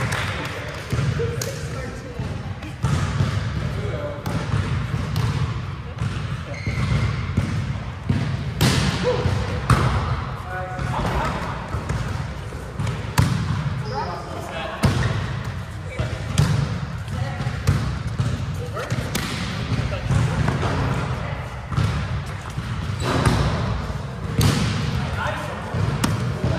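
Volleyball rally in a large gym: the ball is struck by players' forearms and hands in sharp smacks every few seconds, with players' voices calling in between.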